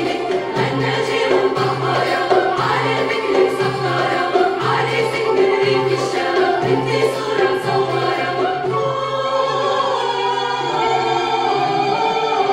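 Mixed choir singing a traditional Syrian bridal procession song (zaffe), accompanied by a small Arabic ensemble of violins, cello, oud and hand drums, with a steady beat.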